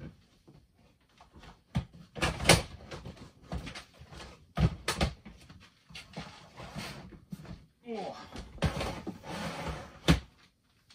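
Black plastic storage crates being handled and stacked: a series of sharp plastic knocks and clatters, with rustling near the end.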